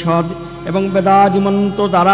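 A man's voice reciting in a chanting, sing-song manner, holding each syllable on a steady note, over a faint steady drone.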